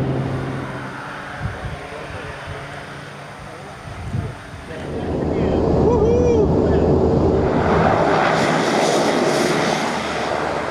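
Single-engine light propeller plane: a steady engine drone at first, then engine and rushing air noise that grow louder from about five seconds in as the plane comes in to land. A brief rising-and-falling tone sounds about six seconds in.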